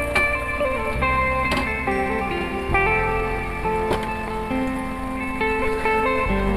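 Instrumental background music with held melodic notes over a bass line.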